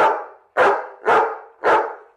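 A dog barking four times in quick succession, about half a second apart.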